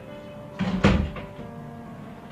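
A single loud thud, a little over half a second in and loudest just before one second, over steady background music.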